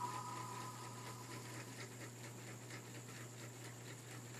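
Faint room tone: a steady hiss with a low hum underneath and no distinct event.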